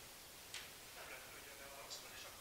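Quiet room with a sharp click about half a second in and a softer one near the end, the handling noise of a handheld microphone being taken up, with faint voices in the background.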